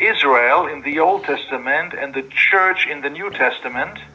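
A man speaking continuously, with the thin, narrow sound of video-call audio.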